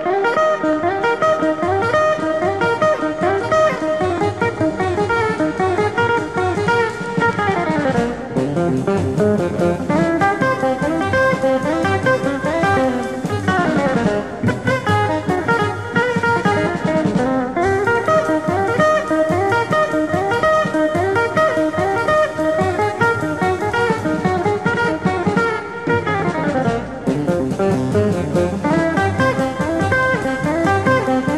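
Jazz guitar trio playing: guitar carrying the lines over double bass and a drum kit.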